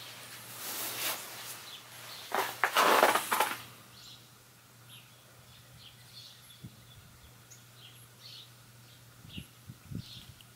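Wind buffeting the microphone in two gusts, the louder one from about two and a half to three and a half seconds in, then dropping away. Faint short bird chirps come through the rest, over a low steady hum.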